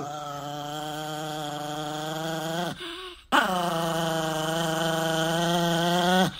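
A chihuahua vocalizing in two long, steady-pitched drawn-out sounds, with a short break about halfway through, the dog's 'talking'.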